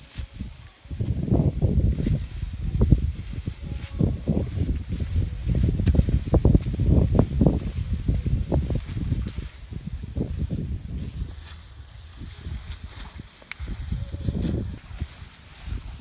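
Wind buffeting the microphone in irregular gusts, with rustling of rice stalks. The gusts ease off for a few seconds late on, then pick up again.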